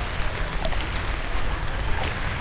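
Heavy rain on a flooded street: a steady, even hiss with a low rumble underneath.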